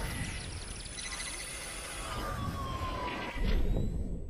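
Electronic logo-intro sound effects: sustained shimmering high tones with slow gliding synth tones, and a new swell about three and a half seconds in that begins to fade near the end.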